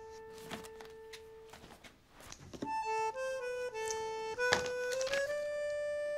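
Soft background score: a held note fades away, then after a short lull a slow melody of long held, reedy notes steps up and down. A few soft thuds from the cardboard gift box being handled, the clearest about four and a half seconds in.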